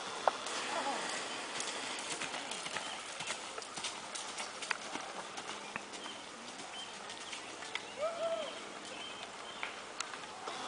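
A horse's hoofbeats on dry dirt as it lopes across the field, heard as scattered soft thuds and clicks over a steady outdoor hiss.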